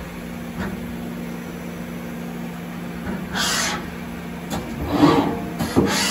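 Mori Seiki ZT1500Y CNC turning center running through a cycle: a steady motor hum that stops about four and a half seconds in, a short hiss about three and a half seconds in, then clicks and hissing near the end as the tool turret moves.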